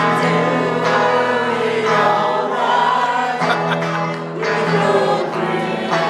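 A live band performing a song: a man singing through a microphone over amplified guitar and backing music.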